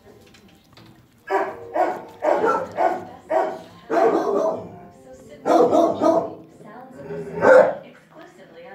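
A dog barking: a string of about ten loud barks in quick runs, starting about a second in, the loudest near the end.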